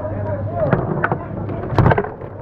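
Table-football (foosball) game: sharp plastic clacks as the player figures on the rods strike the ball, a few single clacks and then a louder burst of hits near the end. A steady low hum runs underneath.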